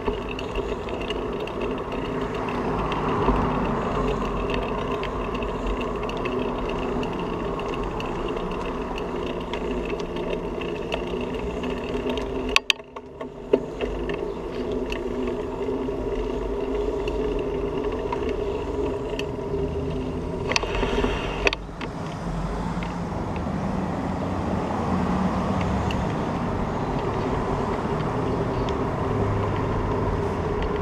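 Steady rolling and rattling noise of a bicycle riding along a concrete sidewalk, heard through a camera mounted on the bike. There is a brief dropout about twelve seconds in, and a couple of sharp knocks around two-thirds of the way through.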